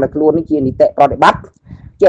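A man speaking in Khmer, with a short pause near the end.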